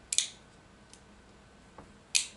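Liner lock of a Spyderco ClipiTool folding multitool snapping as its stainless main blade is worked: a sharp, doubled metallic click right at the start, then a faint tick about a second in and another near the end.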